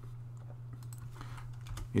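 A few faint, scattered computer keyboard keystrokes opening a new line in the code, over a steady low hum.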